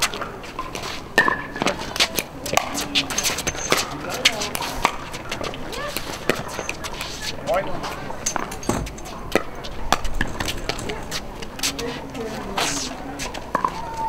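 Sharp pops of pickleball paddles striking plastic balls, many in an irregular scatter, with faint voices talking.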